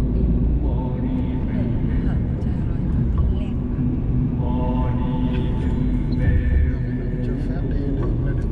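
Steady low road and engine rumble inside a moving Mercedes-Benz car's cabin on the highway, with people's voices talking over it.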